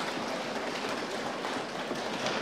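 Applause from many people in a large chamber, a dense, even crackle of clapping that greets a member who has just taken his oath.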